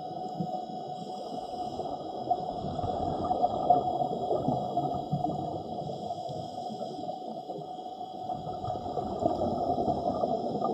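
Underwater sound picked up by a camera in its housing: a steady, muffled gurgling and crackling water noise with faint steady high tones over it.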